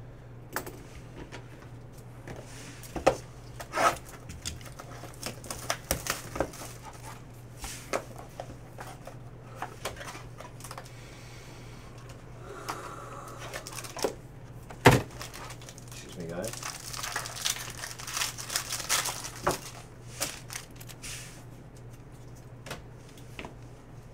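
Hands opening a 2017-18 Cornerstones basketball card box and handling the cards: scattered cardboard taps and clicks, with one sharp click about two-thirds of the way in, then a few seconds of crinkling near the end. A steady low hum runs underneath.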